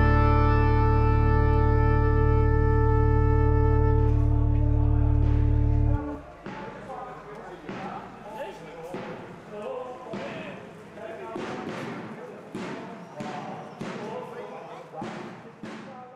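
The song's final sustained chord rings over a steady low drone and cuts off abruptly about six seconds in. After that, a quieter street recording of a marching brass band procession: a bass drum beating steadily about every three quarters of a second, brass tones and crowd voices.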